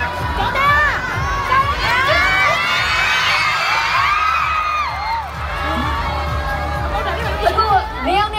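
A crowd of fans screaming and cheering, many high-pitched voices overlapping, thickest in the middle and thinning out near the end.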